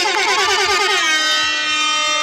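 Loud air horn sound effect, the kind hip-hop DJs fire over a PA. It wavers for about a second, then holds a steady multi-tone blast.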